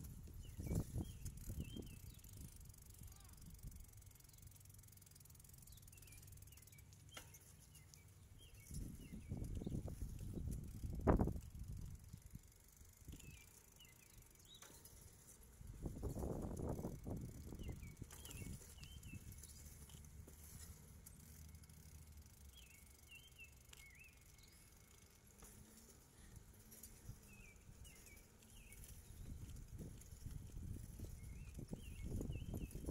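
Outdoor walking ambience: wind buffeting a phone microphone in low rumbling gusts, strongest about ten seconds in and again around sixteen seconds, with one sharp knock near eleven seconds. Small birds chirp faintly throughout.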